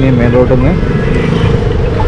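Wind and road rumble on a microphone riding on a Revolt RV400 electric motorcycle, with a steady hum from the bike. A man's voice is heard briefly near the start.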